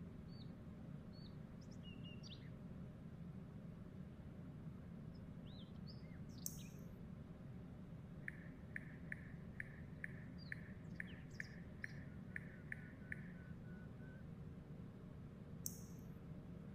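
Faint, scattered bird chirps over a steady low hum. In the middle comes a run of about a dozen evenly spaced short notes, roughly two a second, and there are two sharp high clicks, one about six seconds in and one at the very end.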